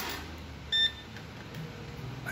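HOKI 813 digital multimeter giving one short, high beep just under a second in as it is switched on and powers up with all display segments lit. A soft handling rustle is heard at the start.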